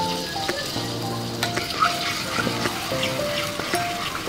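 Oil sizzling steadily in a wok as blended chili paste fries with blended shallot and garlic, with a few scrapes of a metal spatula as stirring begins near the end. Soft background music plays with held notes.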